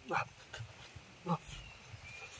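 A man's two short wordless vocal sounds while eating, about a second apart.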